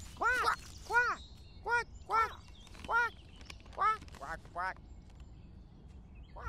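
Duck-like quacking: a series of about eight short, arching quacks coming roughly every half second, stopping about five seconds in.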